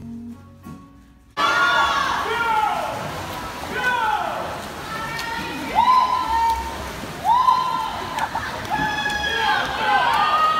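Quiet music briefly, then from about a second and a half in, spectators at a swimming race cheering and shouting. Long, drawn-out high yells rise and fall over a dense, echoing crowd din.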